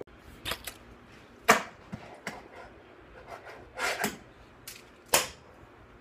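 Fingerboard clacking on a countertop: a series of sharp wooden clicks as the small deck pops and lands, the loudest about a second and a half in and again near the end, with faint rolling of the tiny wheels between.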